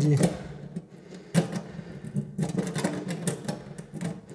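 Key clicking and rattling in the loose lock of a small metal access hatch as it is worked back and forth, several sharp clicks over a steady low hum.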